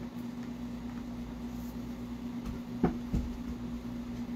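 A steady low hum, with two light knocks close together a little under three seconds in as a paint bottle is handled.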